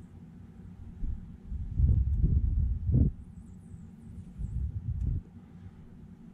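Low, muffled rumbling and bumping on the microphone in two stretches, from about a second in to three seconds and again shortly before the end, of the kind made by handling or air hitting the mic.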